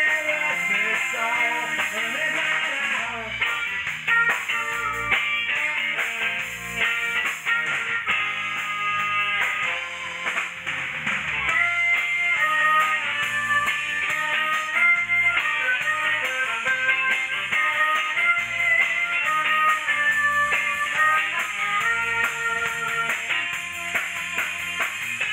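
Live band playing an instrumental stretch of a soul number without vocals, with electric guitar prominent over bass and drums.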